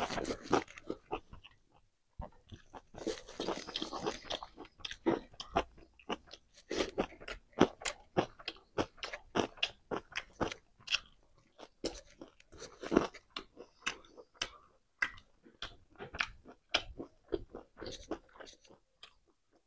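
Close-miked chewing and crunching of a hand-eaten mouthful of fried pork, rice and leafy greens: an irregular run of sharp wet clicks and crunches, several a second.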